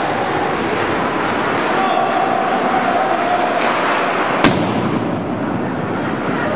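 Ice hockey play in an arena: a steady hubbub of spectator chatter and play, with one sharp crack of a hit against the rink boards about four and a half seconds in.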